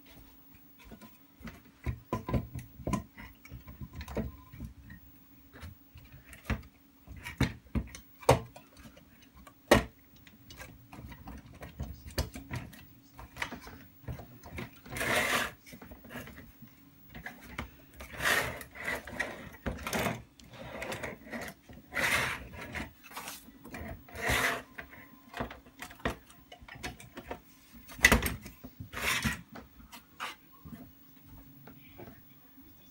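Wood knocking and scraping against a metal tube frame as a rough wooden board is handled and fitted onto it. First comes a run of sharp knocks and clicks, then, from about halfway, longer rubbing and scraping strokes. A steady low hum sits underneath.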